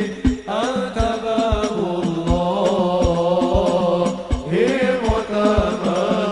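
A man sings a drawn-out Arabic devotional melody in a sholawat, over steady deep beats on a frame drum. The voice breaks off briefly about half a second in and starts a new phrase, then shifts to another phrase near the end.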